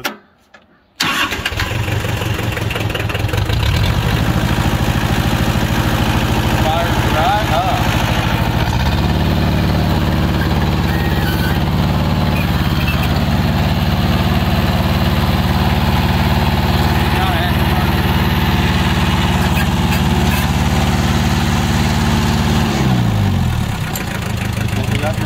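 1979 Kubota L285 tractor's small diesel engine starting on the glow plugs: it comes to life about a second in and keeps running steadily and loudly. Its note changes about nine seconds in, and its pitch falls near the end.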